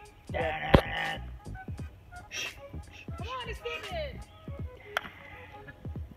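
A wooden croquet mallet strikes a hard plastic croquet ball once with a sharp knock, just under a second in.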